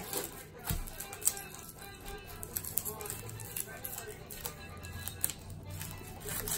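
Kitchen knife cutting a red onion on a wooden cutting board: a few separate sharp taps of the blade on the board, the first two within the first second and a half and another near the end, over quiet background music.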